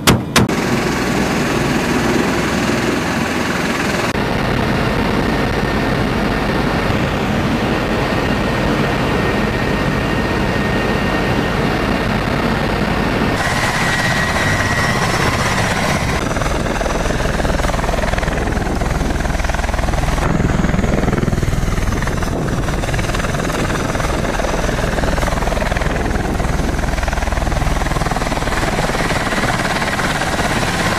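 The last shots of a machine-gun burst at the very start, then the steady, loud running of an MV-22 Osprey tiltrotor's engines and rotors, heard partly from inside its cabin.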